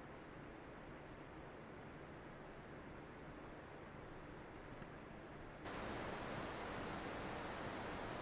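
Faint steady hiss of room tone and microphone noise, with no distinct sounds in it; about two-thirds of the way through the hiss suddenly gets louder and brighter and stays there.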